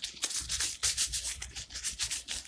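Pink plastic-gloved hands rubbing and rolling a ball of bread dough between the palms to round it. The rubbing comes as quick repeated strokes, several a second.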